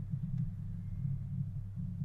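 A low, steady background hum, with no other distinct sound.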